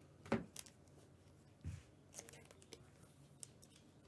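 A stack of trading cards handled in gloved hands: a few faint clicks and ticks of card edges, the sharpest about a third of a second in.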